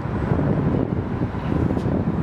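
Wind buffeting the microphone, a steady low rumble, over the hum of city traffic.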